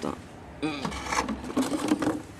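A voice speaking briefly, with some rustling handling noise.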